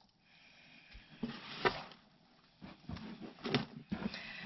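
Hands digging through and fluffing worm compost in a plastic bin: soft rustling and crumbling of the bedding in two bouts, one about a second in and one in the last second and a half, with a few small clicks.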